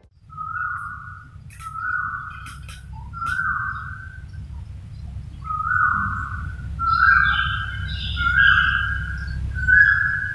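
Wild birds calling loudly: one bird repeats a clear whistled note roughly once a second, the notes running closer together toward the end, and a second, higher chattering call joins about seven seconds in. A steady low rumble lies underneath.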